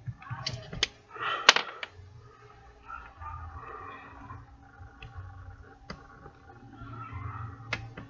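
Scattered small clicks and taps from handling a Vuse e-cigarette battery and its USB charger, with the loudest, sharpest click about one and a half seconds in.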